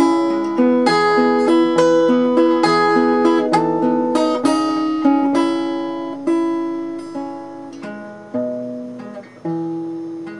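Acoustic guitar played alone, picked note by note in an instrumental passage. The notes come quickly at first, then thin out and get quieter in the second half as the song comes to its end.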